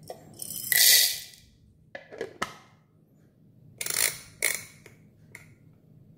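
Coffee beans poured from a canister into a plastic grinder hopper, a loud rattle lasting about a second. A few short clicks follow, then a second, shorter rattling burst about four seconds in and a last click.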